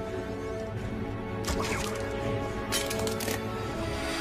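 Film score music with steady held notes, cut by two short, sharp noisy sound effects, one about a second and a half in and a longer one near three seconds.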